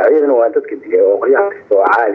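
Only speech: a single voice talking, with short pauses.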